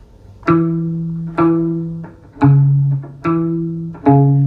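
Electric guitar playing a slow single-note line: four low plucked notes about a second apart, each left to ring until the next. It is a reggae guitar line that accompanies the bass line.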